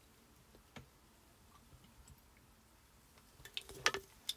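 Mostly near silence with a few faint ticks. Near the end comes a short cluster of light clicks and rustles as card is handled on a cutting mat.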